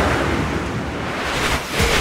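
Rushing whoosh transition sound effect marking a change of news section: a swell of hissing noise with no tones that eases slightly and then swells again just before it cuts to the next item.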